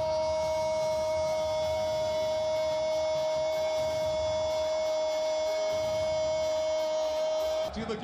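Football commentator's long, sustained goal cry, a single high note held steadily for about eight seconds before breaking off into speech near the end.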